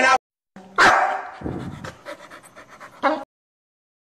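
A dog whimpering: a loud cry about a second in that fades away, then a short yip near the three-second mark.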